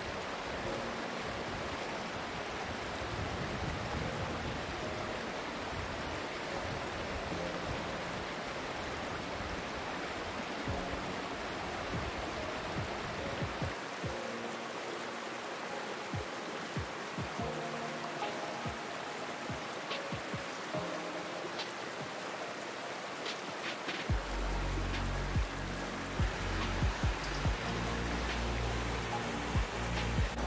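Steady rush of a mountain stream's small cascades and plunge pools, under background music; a deep bass beat comes in about three-quarters of the way through.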